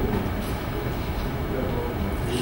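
Steady low rumble with a hiss over it: the background noise of a large room picked up through the microphone, with no distinct event standing out.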